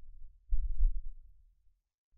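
A low, muffled thump with a short rumble on the microphone about half a second in, in a pause between words, then near silence.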